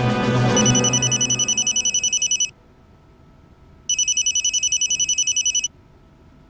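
A telephone ringing twice, each ring a fast warbling trill lasting about two seconds, the second starting about four seconds in. Music fades out under the first ring.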